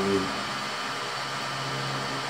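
Steady mechanical hum with a few fixed low tones under it, running at an even level throughout.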